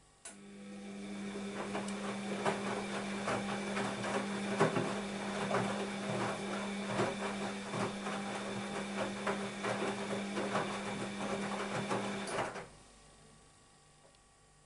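Bosch WAB28220 front-loading washing machine turning its drum through one wash stroke. The motor hums steadily while the wet laundry tumbles and sloshes with irregular thuds. It starts abruptly just after the beginning and stops about a second and a half before the end.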